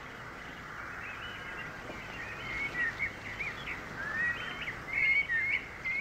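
Birds chirping and singing over a steady background hiss, the chirps growing busier and louder from about halfway through.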